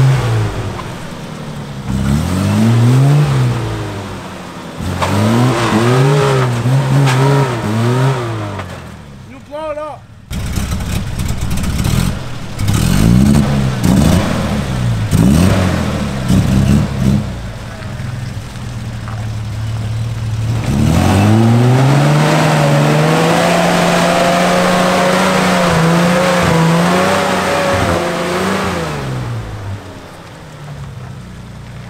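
Nissan GQ Patrol engine revving hard in repeated bursts, pitch climbing and falling with each push, as the 4x4 tries to climb a muddy hill with its tyres spinning in the mud. Near the end it holds one long high rev for several seconds.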